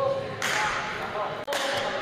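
A badminton racket strikes a shuttlecock about half a second in, and the sharp crack rings on in the hall. A second sharp hit comes about a second later.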